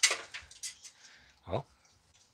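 Handling noise of a plastic PC case fan and its cables being worked loose inside a metal case: a sharp click, then a few fainter clicks and rattles that fade within the first second.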